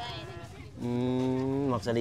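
A man's voice holding a long, level 'ooh' for about a second, then breaking into speech near the end.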